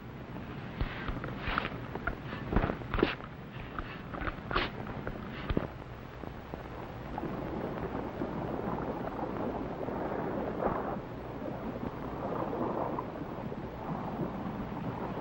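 A shovel digging into sand, a handful of sharp, uneven knocks and scrapes over the first six seconds, followed by a steady rushing noise that swells and dips in the second half.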